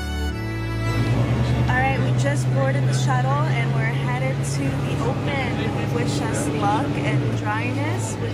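A bus's engine heard from inside the passenger cabin: a steady low drone that dips slightly in pitch about seven seconds in, with voices over it.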